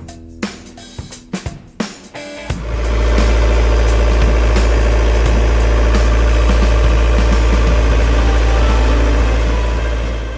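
Volvo Penta TMD22 turbocharged marine diesel starting about two and a half seconds in and then running steadily with a loud, deep drone, back together after its Garrett turbocharger was serviced. Before it starts, a few light clinks over soft background music.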